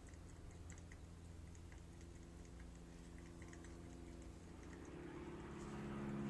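Faint, scattered soft ticks and scratches of a flat brush working watercolor paint onto paper, over a low steady room hum.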